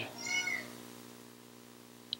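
A brief high-pitched squeak or cry, about half a second long, early on, then a faint steady hum.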